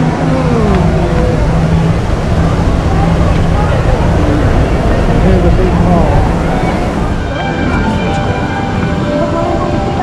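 Walt Disney World monorail train passing overhead: a steady electric hum with a whine that glides down and back up, over a low rumble. The hum fades about six or seven seconds in.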